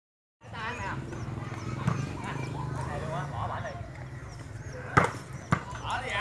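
Voices of volleyball players and onlookers calling and chattering, then two sharp smacks of a volleyball being struck, about half a second apart near the end. The first smack is the loudest sound.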